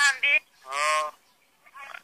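Speech: a voice calls the name "Hanbi", then a single long, held voiced sound follows about half a second later.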